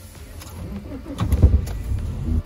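Van engine heard from inside the cab, a low rumble that grows louder about a second in.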